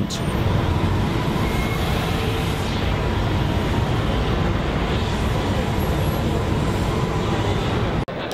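Backhoe loader's diesel engine running steadily under hydraulic load as the rear backhoe arm swings and works a bucket over a sand pile.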